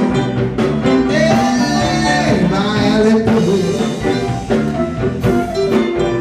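A live blues band playing: a woman singing over electric guitar, bass and drums, with a harmonica played into a microphone.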